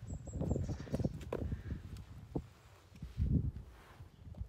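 Footsteps on a cobbled lane: irregular scuffs and knocks, with a heavier low thud a little over three seconds in.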